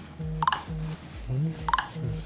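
Gloved hand handling a clip-on wireless microphone and its chest strap: two sharp clicks, about half a second in and near the end. Between them are short, flat low tones that cut in and out.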